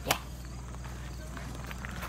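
A single sharp hand slap of a high five just after the start, then low steady background with faint voices.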